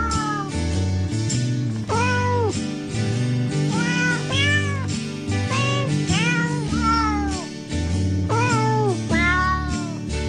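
Domestic cat meows, mostly in pairs, each rising and then falling in pitch, about every two seconds over background music with a steady bass line.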